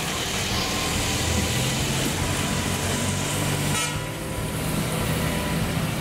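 Busy street traffic: vehicle engines running and tyres hissing on a wet road as a jeepney drives past, with a short rapid rattle a little before the 4-second mark.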